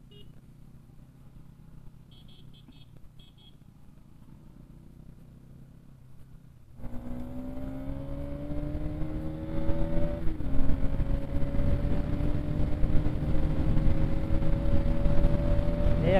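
Faint low hum with a few short high beeps for about the first seven seconds, then a sudden jump to a Bajaj Pulsar NS200's single-cylinder engine accelerating, its pitch climbing steadily, with one upshift about ten seconds in before it climbs again, over wind and road noise.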